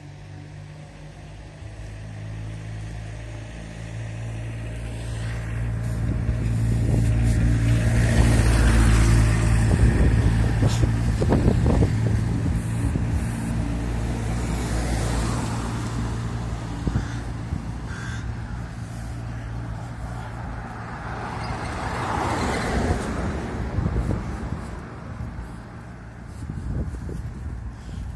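Road traffic on a town street: a motor vehicle's engine hum builds and passes close by, loudest about eight to twelve seconds in, then fades, and a second vehicle goes by near the twenty-two-second mark.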